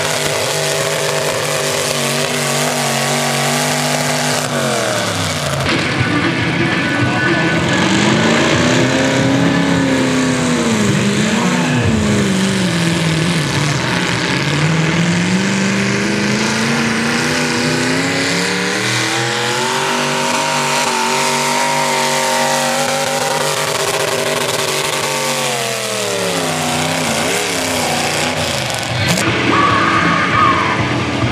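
Limited modified pulling tractor engines running hard under load while dragging a weight-transfer sled. One run winds down a few seconds in; then another engine's pitch swings up and down, climbs steadily for several seconds, and drops again near the end.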